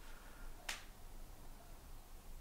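A single short, sharp click a little under a second in, in an otherwise quiet room.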